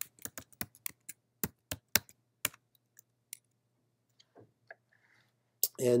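Typing on a computer keyboard: a quick run of about a dozen keystrokes over the first two and a half seconds, then a few scattered clicks, over a faint steady hum.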